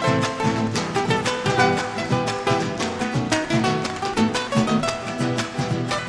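Instrumental folk music played live by a band: a guitar strummed and plucked in quick runs, with a harp, over a steady rhythmic beat.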